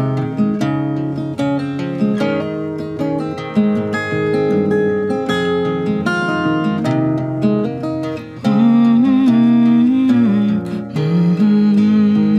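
Acoustic guitar playing the instrumental opening of a song, a continuous run of changing notes and chords. About two thirds of the way through, a louder sustained note wavers in pitch for a couple of seconds.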